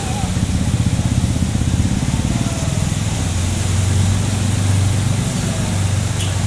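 Small motorcycle and scooter engines running as the bikes ride through floodwater, with water washing around their wheels. A steady low engine hum holds through the second half.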